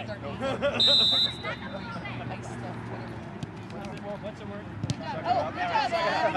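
Referee's whistle blown once, a short high-pitched blast about a second in, over spectators' voices on the sideline.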